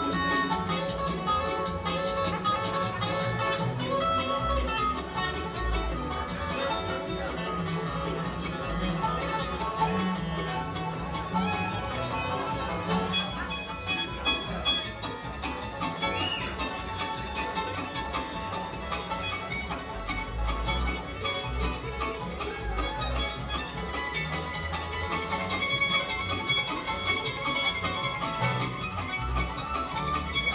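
Live bluegrass band playing an instrumental passage: fiddle, five-string banjo, acoustic guitar and mandolin over upright bass, with rapid picked notes.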